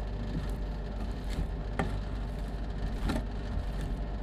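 Metal spatulas tapping and scraping on a steel rolled-ice-cream pan as ice cream is chopped and spread, a few sharp clinks standing out, over a steady low machine hum.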